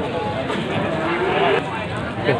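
Livestock calling, with one drawn-out call rising in pitch about a second in, over the steady chatter of a crowd.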